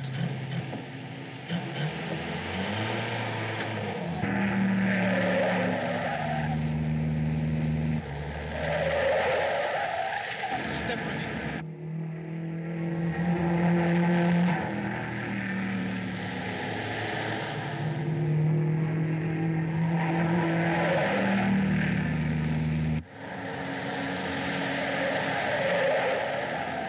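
Car chase sound effects on an old film soundtrack: car engines running hard, with repeated swelling squeals of tyres through the turns. The sound breaks off abruptly twice, about halfway through and near the end.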